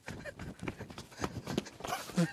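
Quick, irregular footfalls of people running across paved paths and grass.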